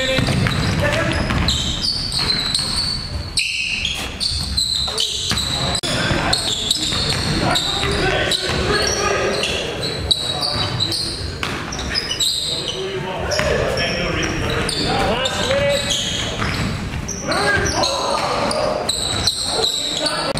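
Basketball bouncing repeatedly on a hardwood gym floor during live play, with players' voices calling out and the sound echoing in the large gym.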